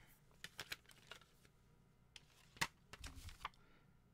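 Faint paper rustling and light clicks from a CD booklet and a plastic jewel case being handled, with one sharper click about two and a half seconds in.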